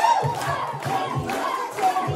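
An audience cheering and shouting over music with a low, steady beat, as a song starts.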